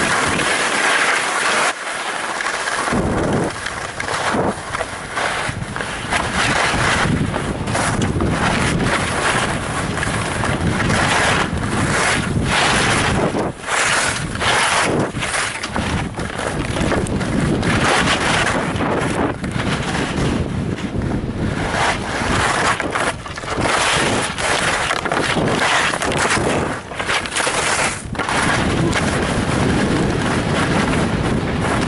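Wind rushing over the microphone of a skier's helmet or chest camera during a fast descent, with skis hissing and scraping over packed snow. The noise swells and dips every second or so as the skier turns.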